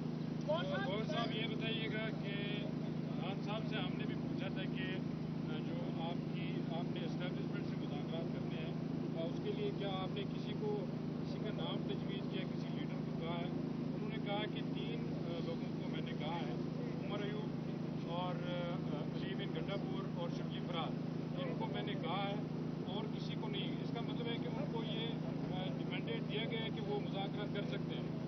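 Faint, distant voices talking off-microphone over a steady low hum.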